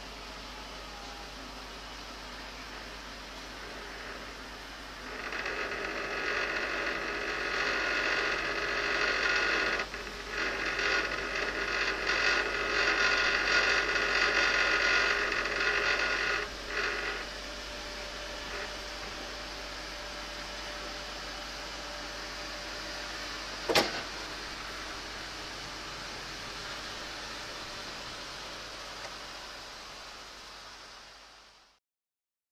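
Truck-mounted crane working, with a whining hydraulic sound for about twelve seconds that breaks off briefly partway through, over a steady hiss. A single sharp click comes later.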